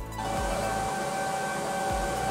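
Antminer L3+ Litecoin ASIC miner running, its cooling fans making a loud, steady rush with a steady whine on top. It cuts in abruptly just after the start.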